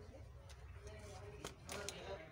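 Light clicks of a smartphone's plastic back cover being handled and fitted against its frame, with a few sharp clicks in the second half.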